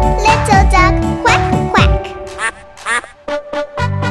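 Bouncy children's-song music with cartoon duck quacks. About halfway through the backing drops away, leaving a few short quacks before the music comes back near the end.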